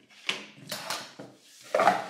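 Small objects being handled and set down on a wooden tabletop: several brief knocks and scrapes, the loudest one near the end.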